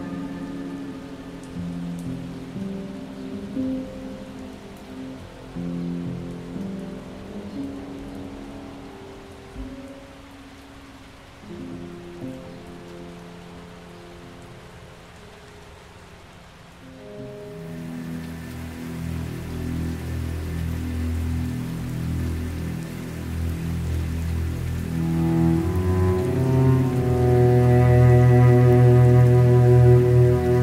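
Steady rain under slow, dark piano and cello music. The music thins out until only the rain is left for a few seconds, then a new piece begins about halfway through with low held notes that swell steadily louder, higher notes joining near the end.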